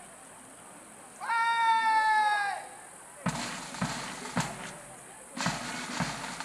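A long, drawn-out shouted parade-ground word of command, then a bass drum beating steadily at marching pace, a little under two beats a second, to start the march past.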